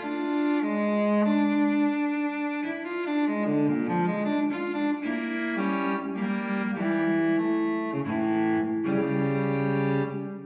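Instrumental background music with long held notes that change about once a second.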